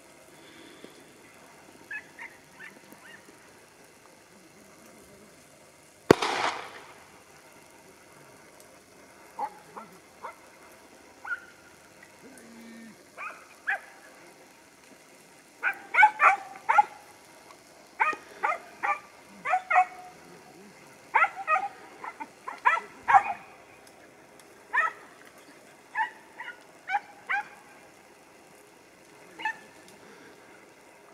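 Podenco hounds yelping in short high yips while hunting rabbits in the thicket, a few scattered at first, then rapid runs of yips through the second half. A single sudden loud sharp sound about six seconds in.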